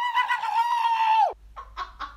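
A man's loud, high-pitched scream held on one note, dropping in pitch as it cuts off about a second and a half in. A few faint clicks follow.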